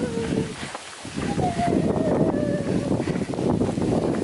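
Quick footsteps on a wet dirt path, with the rustle of a waterproof robe and wind on the microphone, a dense irregular patter. A short wavering voice tone, like a hum or drawn-out call, sounds about a second in.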